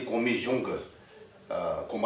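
A man lecturing in Tibetan: a short spoken phrase, a pause of under a second, then speech resuming near the end.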